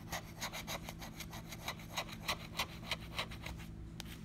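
Metal scratching tool scraping the coating off a lottery scratch-off ticket in quick, short strokes, about four a second, that stop shortly before the end.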